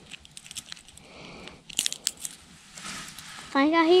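Faint rustling and crackling, with a short burst of sharp crackles about two seconds in, which the angler takes for a gator walking in the brush.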